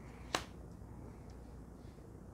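A single sharp click about a third of a second in, as a card is set down on a tabletop. Faint room tone before and after it.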